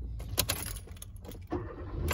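Keys jangling and clinking a few times inside a car, in a cluster early on and once more about a second and a half in, over a low steady hum.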